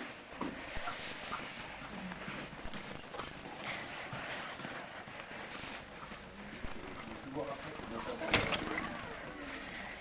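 Faint, indistinct voices over room noise, with one sharp knock about eight seconds in.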